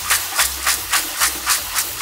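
Soaked adzuki beans sloshing and rattling in a stainless steel mesh colander as it is shaken under a running tap, in an even rhythm of about three to four shakes a second.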